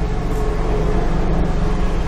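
Steady low hum with an even hiss over it, unchanging throughout: background noise picked up by the microphone, with no distinct event.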